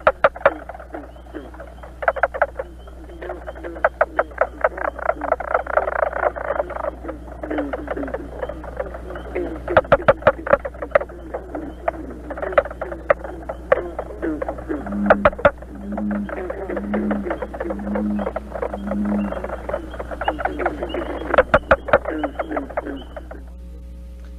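Recorded calls of mink frogs (Rana septentrionalis): burry, wooden cut-cut-cut knocks given in rapid series, like the distant sound of a hammer striking wood. A low note repeats five times about a second apart past the middle, and the calls stop just before the end.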